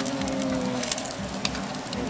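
Egg meatballs frying in a multi-hole metal mould pan over a burner, with a steady sizzle and crackle and a few light clicks of a metal skewer against the pan. A short low humming tone sounds in the first second.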